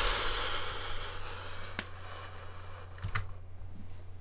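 Fostex TH610 headphones being handled and hung on a headphone stand: a rustling that fades over the first two seconds, a sharp click a little before two seconds in, and a couple of light knocks about three seconds in as they settle on the stand.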